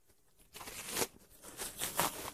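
Scissors cutting through a Burmese python's scaly belly skin along the incision: a run of crisp snipping and tearing noises that starts about half a second in and is loudest near one and two seconds.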